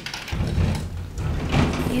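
Sliding glass balcony door rolling open on its track, a low rumble that starts about a third of a second in.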